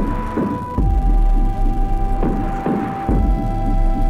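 Live electronic music played on synthesizers and a drum pad controller: deep kick-drum hits with a falling pitch, over a throbbing bass. A single held high synth note drops to a lower pitch about a second in.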